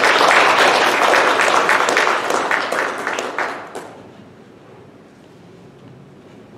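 Audience applauding, the clapping dying away about four seconds in.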